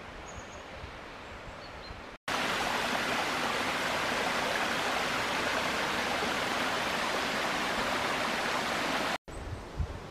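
Small mountain brook running over stones: a steady rushing of water that starts abruptly about two seconds in and stops abruptly about a second before the end. Before it, only faint, quiet forest ambience.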